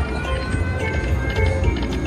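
Whales of Cash slot machine playing its free-games bonus music, with the quick clicking rattle of the reels spinning as the next free spin starts.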